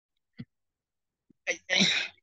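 A short, sudden, breathy burst of sound from a person, about one and a half seconds in, after a faint click.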